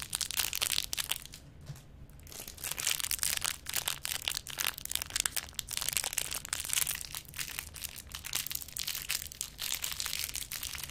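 Plastic wrappers of two Twist Pop lollipops crinkling and crackling as they are twisted and peeled off right at the microphone. There is a short pause about a second in, then steady crinkling.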